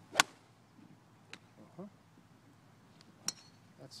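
A golf iron strikes the ball: one sharp, crisp click right at the start. About three seconds later there is a second, fainter click with a short metallic ring.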